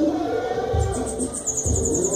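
A bananaquit (sibite) singing a high, rapid, even trill from about a second in, over background music with a regular beat.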